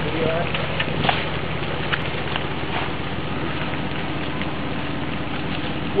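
Dump truck's engine running steadily, with an even low pulsing throb and a light crackly hiss over it.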